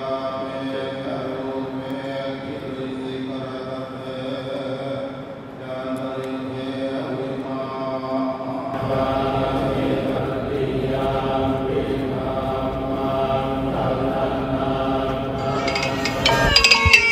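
Group of Thai Buddhist monks chanting Pali verses in unison, a steady drone of held notes. About nine seconds in it becomes fuller, with more low rumble underneath.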